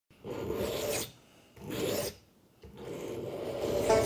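A steel blade drawn across a whetstone in three rasping sharpening strokes, the last one longer and louder.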